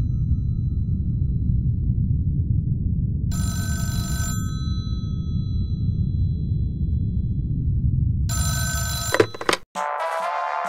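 Landline telephone ringing twice, each ring about a second long with a fading ring-out, over a steady low rumbling drone. Near the end the drone cuts out and an electronic beat begins.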